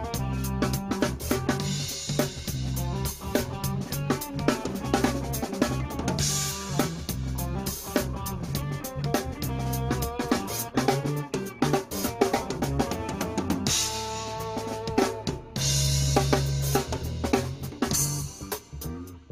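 Background music: a drum kit playing a steady beat over sustained low bass notes.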